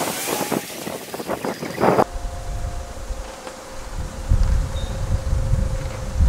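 Outdoor street ambience: an even hiss of noise with a few light clicks. About two seconds in, this gives way to wind rumbling on the microphone with a faint steady hum.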